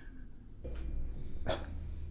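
Quiet pause: a low steady room hum comes in just after the start, with a short breathy puff about one and a half seconds in.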